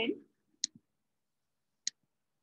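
Two sharp computer mouse clicks about a second apart.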